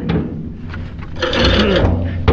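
A rough scraping rub, loudest in the last second, as an object is slid across the deck of a flatbed trailer.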